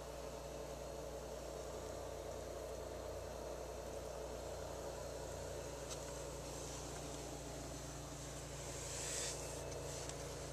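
Steady low electrical hum, as from a plug-in wall transformer powering an electrolysis rust-removal bath. A click comes about six seconds in and a brief hiss near the end.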